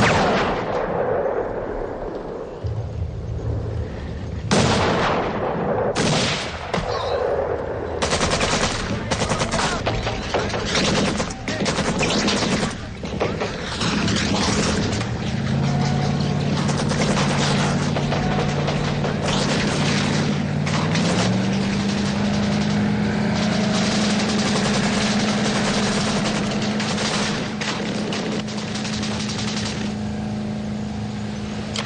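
A single loud rifle shot with a long echoing tail, then a few separate shots, then dense, sustained bursts of gunfire. From about halfway, low held music notes play underneath.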